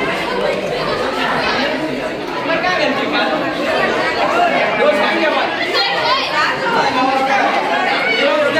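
Many people talking at once in a steady din of overlapping chatter, with no single voice standing out.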